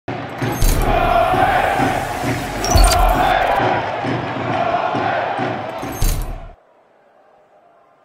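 Football stadium crowd roaring and chanting, with sharp hits about half a second, three seconds and six seconds in; it cuts off suddenly about six and a half seconds in.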